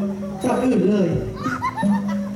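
A likay performer's voice through the stage loudspeakers, sung or chanted in long held notes with gliding turns between them, over faint backing music.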